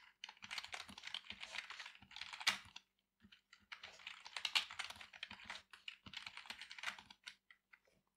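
Typing on a computer keyboard: quick runs of keystroke clicks, with a short pause about three seconds in.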